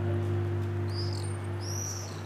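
A sustained low synthesizer chord from scene-transition music, held steady, with two short high chirps about a second in and near the end.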